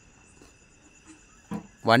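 Crickets chirring faintly and steadily in high-pitched tones. A man's voice starts near the end.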